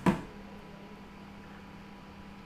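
A single short thump just after the start, over a steady low electrical hum and faint hiss.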